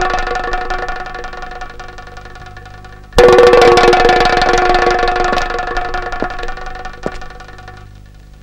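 Background-score percussion: a bell-like metallic note rings and slowly fades. It is struck again about three seconds in, rings out with the same cluster of tones and dies away over several seconds.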